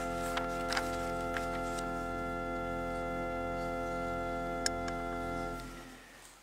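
Church organ holding one sustained chord, steady in pitch, released about five and a half seconds in. A few faint clicks sound over it.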